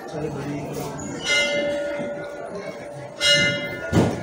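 Hindu temple bell struck twice, about two seconds apart, each strike ringing on with several bright high tones and a lower hum lingering between them. A sharp knock comes right at the end.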